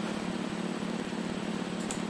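Steady low hum with an even hiss over it, like a fan or air conditioner running in the background of the recording.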